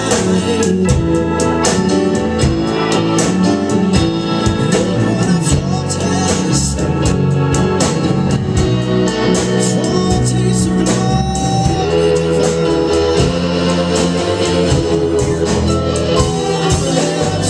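Live band playing a hymn arranged as a blues, with keyboard, electric guitar and drums keeping a steady beat.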